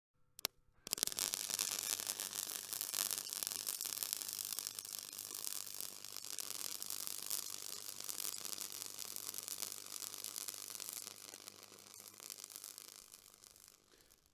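Steady static-like hiss with a faint hum and a thin steady high tone beneath it. It starts after a couple of sharp clicks and fades away over the last few seconds.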